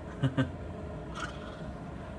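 Two short bursts of a man's laughter near the start, then a steady low background hum.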